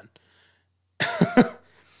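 A man's short laugh, two quick voiced pulses about a second in, after a second of near silence.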